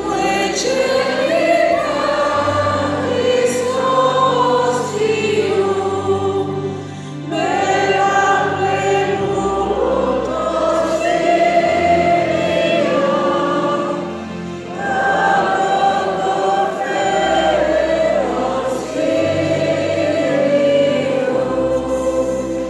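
Many voices singing a slow hymn together over sustained keyboard chords, in long phrases with short dips between them.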